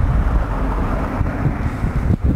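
Wind rumbling on the camera microphone, mixed with vehicle noise from the highway.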